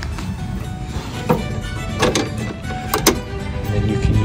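Background music, with a few sharp metal clicks from the wheelchair ramp's draw latches being unhooked: one about a second in, one near two seconds, and two close together near three seconds.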